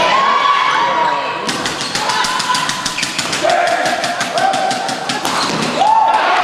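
Court shoes squeaking on a badminton court mat during a doubles rally, in a large hall. From about a second and a half in until near the end there is also a rapid, even run of sharp clicks.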